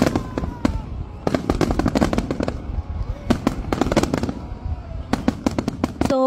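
Fireworks going off: rapid clusters of sharp bangs and crackles over a steady low rumble, with people's voices faintly in the background.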